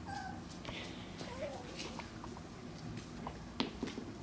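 A puppy giving a few faint, short whimpers, with light taps and clicks among them.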